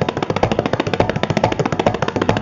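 Tabla solo: the dayan and bayan struck by both hands in a fast, dense run of strokes, many to the second, without a break.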